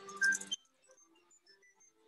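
Soft background music of sparse single notes, a little louder in the first half second and then very faint.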